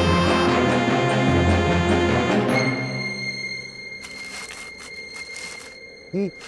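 Cartoon background score music, dense with many held notes. About halfway through it thins out and fades to a quiet, sustained high note.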